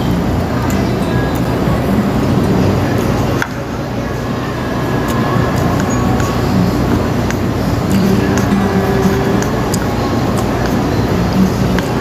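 Loud, steady background din of a busy eatery: music playing over indistinct voices and general noise, with a short dip in loudness a few seconds in.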